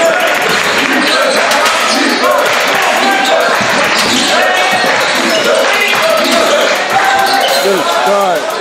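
A basketball being dribbled on a hardwood gym floor, with sneakers squeaking as players move and voices from players and crowd in the large hall.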